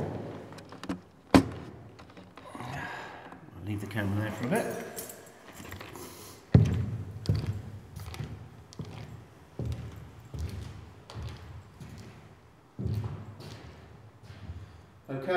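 Sharp knocks as a handheld camera is moved and set down on a hard floor, then footsteps on the hard corridor floor. A loud thud comes about six and a half seconds in.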